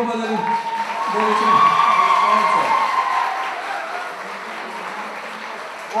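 Audience applauding, with some voices mixed in; the clapping swells about a second in, is loudest around two seconds, and fades away over the last couple of seconds.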